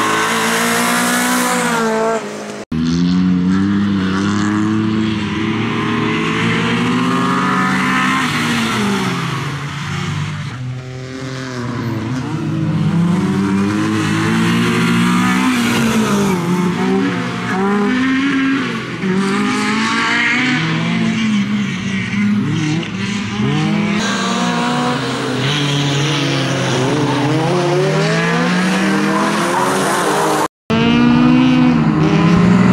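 Renault Clio rally car driven hard through corners, its engine revving up and falling back again and again as it accelerates, shifts and lifts off, with tyre squeal. The sound drops out briefly about two and a half seconds in.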